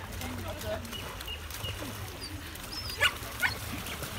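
A dog barks twice in quick succession about three seconds in, over people talking.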